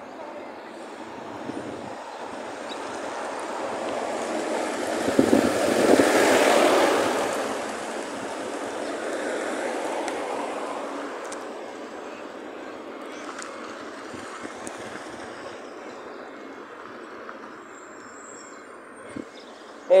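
Road vehicle noise that swells to a peak about six seconds in and then fades away, with a smaller swell a few seconds later, as when a vehicle drives past.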